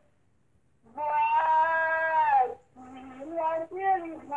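A woman singing a hymn unaccompanied. After a short silence comes one long held note that slides down at its end, then a few shorter notes.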